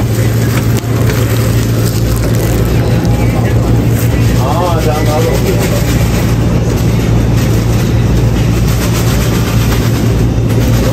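A loud, steady low machine hum that does not change, with background clatter over it and a brief voice about halfway through.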